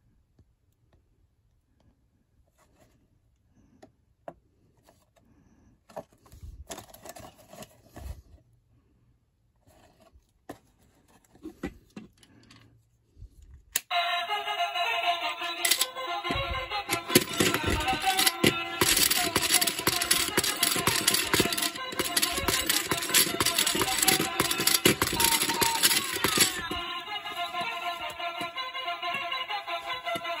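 Quiet handling of the toy and its cardboard and cellophane box, with scattered clicks and knocks. About halfway through, a cheap light-up musical spinning top starts playing its electronic tune loudly. The tune keeps going and gets a little quieter near the end.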